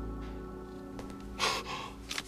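A held music chord fades out softly, then about one and a half seconds in a man gives a short, sharp gasp of surprise.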